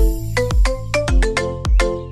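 Background music: a melody of short, sharply struck notes over a steady bass beat, about two beats a second.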